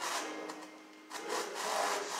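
Rough rubbing or scraping noise in irregular swells, loudest in the second half, over faint sustained musical tones.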